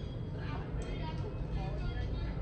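Faint voices of people talking in the background, over a steady low rumble.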